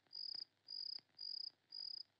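Crickets chirping in short, evenly spaced high-pitched trills, about two a second, faint and steady.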